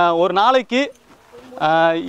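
A voice repeating a short sing-song phrase with rising and falling pitch, in two phrases with a gap of about a second between them.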